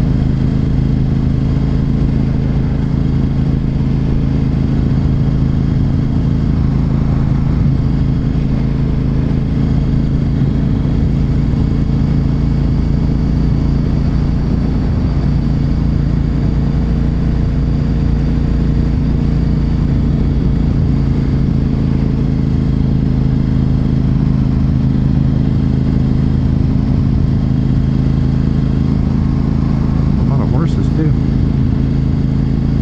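Honda RC51 SP2's 1000cc V-twin engine running at a steady cruise, its note holding one pitch throughout, over a constant rush of wind and road noise.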